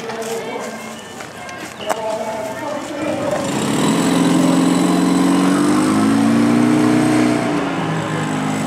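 An engine running nearby, loudest from about three and a half seconds in, holding a steady pitch that drifts slightly before easing off near the end, under people's voices.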